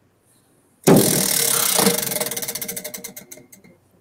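Prize wheel spun by hand, its flapper clicking against the metal pegs around the rim. The clicks start suddenly about a second in, come rapidly at first, then slow and space out as the wheel loses speed, fading out just before it comes to rest.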